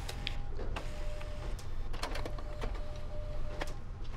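Quiet indoor room tone: a steady low hum with a faint thin tone at times, broken by a handful of light, irregular clicks and taps.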